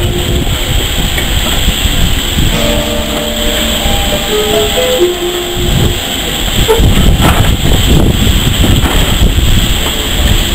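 Railway passenger coaches rolling slowly past close by, their wheels rumbling and knocking over the rail joints, louder in the second half. A short run of steady pitched notes sounds in the middle.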